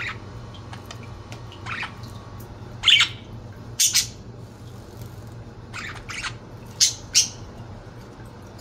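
Budgerigars giving short, sharp chirps and squawks, one or two at a time: the loudest comes about three seconds in, with quick double calls around the middle and near the end.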